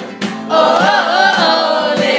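A group of friends singing a song together, with a short break between lines right at the start before the voices come back in about half a second later. Hands clap along in rhythm.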